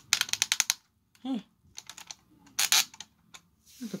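Quick run of small plastic clicks from a Transformers Masterpiece Grimlock figure's hand being twisted at the wrist joint, followed by a few scattered clicks and a louder cluster of clicks about two and a half seconds in.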